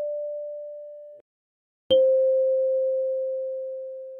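Kalimba notes, one at a time. A high D (D5) is ringing and fading, then stops abruptly about a second in. About two seconds in a C (C5) is plucked and rings on, slowly fading.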